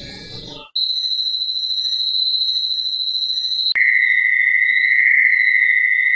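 Synthesized electronic tones: a steady high-pitched tone that switches abruptly, with a click, to a lower and louder steady tone about four seconds in.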